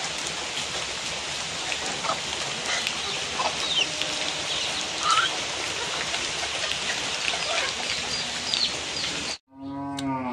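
Steady outdoor hiss with scattered short bird chirps and faint animal calls; the sound cuts off abruptly near the end.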